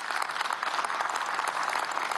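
Applause: a group of people clapping their hands, a dense, even patter of claps.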